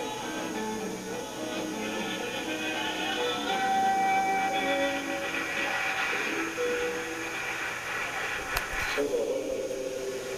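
Live folk band music with voices singing held notes over the band. Near the end there is a sharp click, and the music gives way to a man's voice.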